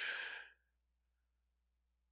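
A man's breathy sigh, a short exasperated exhale lasting about half a second, then silence.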